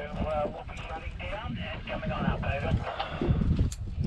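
Quiet, indistinct talking, with a steady low rumble of wind on the microphone underneath.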